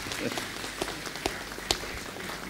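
Audience applause: many people clapping at a moderate level, with a few sharper single claps standing out.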